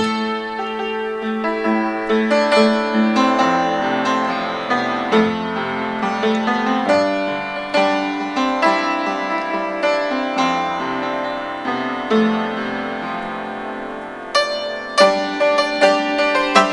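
Upright piano played with both hands, the verse of the song: chords and melody notes ringing into one another, the playing getting louder and more strongly struck near the end.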